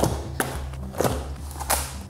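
Small, heavy cardboard boxes of weight plates set down one after another on a rubber gym mat: four dull thuds spread over two seconds, with background music under them.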